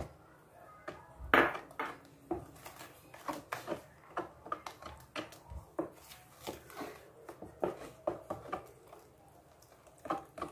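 Wooden spoon stirring thick pie batter in a plastic bowl: irregular knocks and scrapes of the spoon against the bowl, with a louder knock about a second in.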